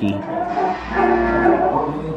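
An animal call, drawn out and held at a steady pitch for about a second in the middle.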